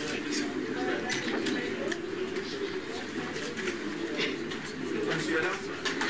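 Low, indistinct chatter of several voices in a room, with frequent short, sharp clicks.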